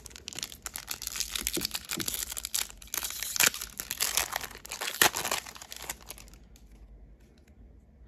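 Foil wrapper of a Pokémon booster pack crinkling and being torn open by hand: a dense crackling rustle with a couple of sharp rips, dying down about six seconds in.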